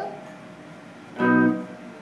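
Electric guitar through a small amplifier: one note sounded about a second in, ringing briefly and fading out, as a check after the volume is turned back up.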